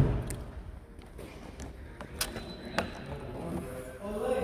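Rear hatch latch of a 2015 Corvette Z06 popping open with a single thump right at the start, followed by a few light clicks and faint handling sounds as the hatch is raised.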